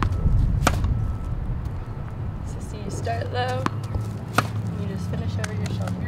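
Tennis ball struck by a racket: a sharp pop just under a second in and another a little past four seconds, over a steady low background hum.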